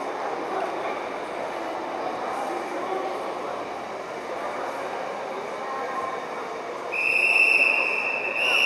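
Steady murmur of spectators' voices echoing in a sports hall. About seven seconds in, a shrill, steady referee's whistle blast of about a second cuts through; in kata judging this signals the judges to give their decision.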